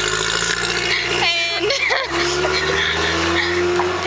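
Two women laughing, with short bursts of laughter about a second in, over the steady hum of a vehicle engine running close by on the street.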